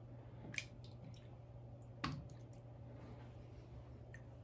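Faint small splashes and drips of water as a hand pushes sticky slime down in a plastic tub of water and lifts back out, with a few short ticks, the clearest about two seconds in, over low room hum.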